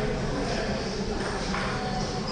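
Indistinct background voices and steady room noise in a large hall.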